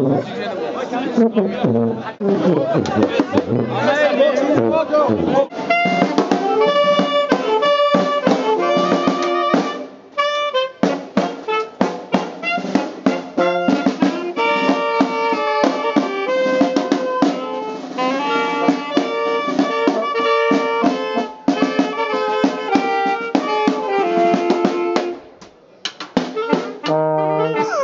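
People chattering for the first few seconds, then a small street brass band with trombone, saxophone, clarinet and snare drum strikes up a tune about five seconds in. The playing breaks off briefly around ten seconds, runs on with steady drum strokes, and stops just before the end.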